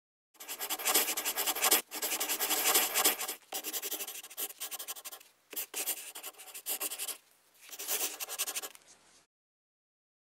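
Marker tip scratching across black paper as cursive lettering is written, in runs of strokes broken by short pauses, stopping near the end.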